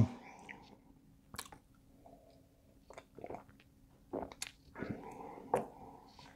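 Faint mouth sounds of a man tasting beer: a few scattered lip smacks and tongue clicks as he works the sip around his mouth.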